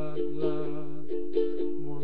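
Ukulele strummed in a steady rhythm, cycling through the same few chords.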